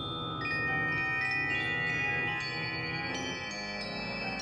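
Organ and percussion music: high, chime-like struck metal notes enter one after another and ring on over a held low organ chord.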